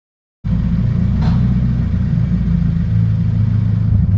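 Scion FR-S's flat-four engine running through its aftermarket Invidia N1 exhaust, a loud, steady low rumble that starts abruptly about half a second in.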